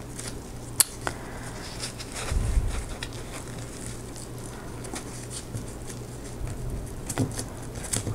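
Faint crackling and rustling of PVA-glued paper being folded over the edges of a book cover and pressed down by gloved fingers, with a sharp click about a second in and a brief low thump about two and a half seconds in.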